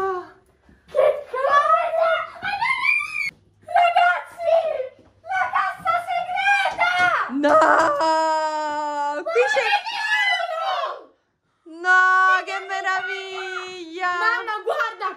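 Girls' excited voices shrieking and exclaiming in a small room, high and sliding in pitch, with two long held squeals in the second half.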